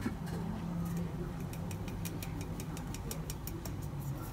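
Round metal flour sieve being shaken to sift flour and baking powder into a bowl, its mesh and rim giving light, regular ticking about five times a second from a little over a second in, over a steady low hum.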